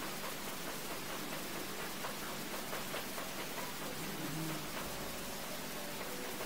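Steady hiss of background noise, with a few faint ticks of a marker writing on a whiteboard.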